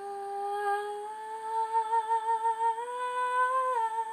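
A female voice humming one long wordless note, unaccompanied. The note is steady at first, then rises slightly in pitch with a vibrato from about a second and a half in, and steps down near the end.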